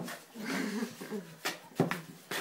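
A person's voice, a low wavering hum with no words, followed by two short clicks in the second half.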